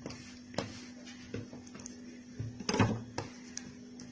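Soft taps and knocks of hands handling pieces of stiff pasta dough on a wooden table, the loudest a little under three seconds in, over a steady faint hum.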